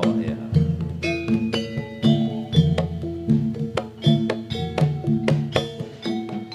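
Javanese jaranan gamelan music: struck, ringing metal notes in a quick repeating pattern over low sustained tones, punctuated by sharp percussive strokes.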